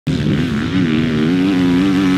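Kawasaki KX450 motocross bike's four-stroke single-cylinder engine running at steady high revs, its pitch dipping and rising a little.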